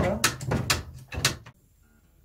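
Small knife scraping hardened spray-foam insulation out of a bus's front door mechanism, three short scraping strokes about half a second apart, stopping about a second and a half in.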